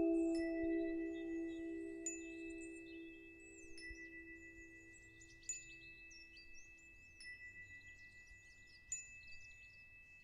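Soft background music of chime-like tones: a held chord fades away over the first five seconds, leaving quiet high chime notes and tinkles.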